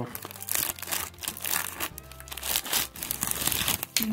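Plastic snack-cake wrapper crinkling and tearing as it is pulled open by hand, a dense run of irregular crackles.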